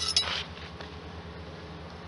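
A brief metallic scrape and clink in the first half-second, then the low steady hum of honeybees around the open hive.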